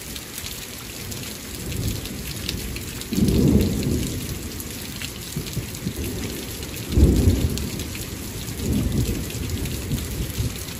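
Steady rain falling through a thunderstorm, with thunder rolling over it. A low rumble builds from about a second and a half in. A sudden loud clap about three seconds in rumbles on for a couple of seconds, and a second loud clap comes about seven seconds in, followed by more rumbling near the end.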